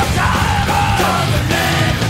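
Progressive thrash metal recording: distorted electric guitar, bass and drums playing continuously, with shouted vocals.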